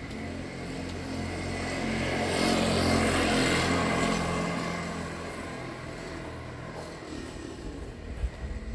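Motor scooter riding past on the road, its small engine growing louder to a peak near the middle and then fading away.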